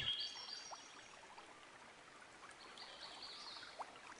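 Faint outdoor background: a steady low hiss with a few high, thin chirps near the start and again about three seconds in, likely birds or insects.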